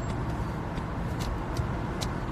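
Steady low rumble of a car's engine and road noise inside its cabin, picked up by a phone's microphone.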